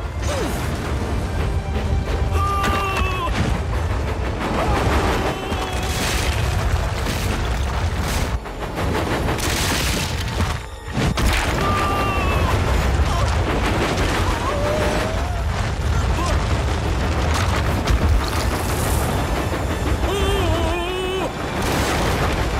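Action-scene soundtrack: music over a continuous low rumble with repeated booms and crashes, and a couple of short steam-whistle blasts.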